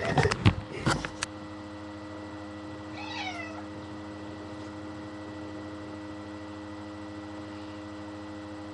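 A domestic cat meowing once, a short falling call about three seconds in, while being bathed in a bathtub. A few sharp knocks and bumps come in the first second, over a steady low hum.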